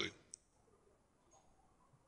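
A man's speech trailing off at the very start, then a single short click, then near silence: room tone with only a few faint ticks.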